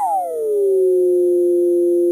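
Electronic synthesized tone, part of a channel ident sting, sweeping steeply down in pitch and settling about half a second in into a steady, held chord of a few pure tones.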